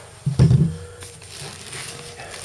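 A thump about half a second in, then rustling and crinkling as the camera and the abrasive wheel are handled on a drop cloth.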